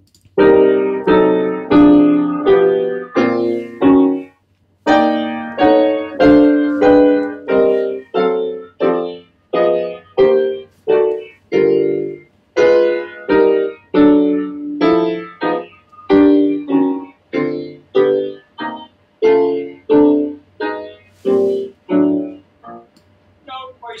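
Piano playing a steady series of block chords, drop-two-and-four voicings, struck one after another about one to two a second, each ringing briefly before the next, with a short pause about four and a half seconds in.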